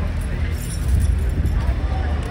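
Light metallic jingling of a cavalry horse's bit and bridle fittings as it moves its head, over crowd voices and a steady low rumble.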